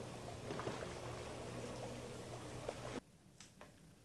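Water lapping and trickling in an above-ground swimming pool. It cuts off suddenly about three seconds in to a quiet room, where a couple of faint snaps come from long beans being broken by hand.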